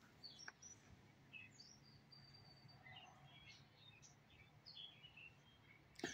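Near silence with faint, scattered bird chirps.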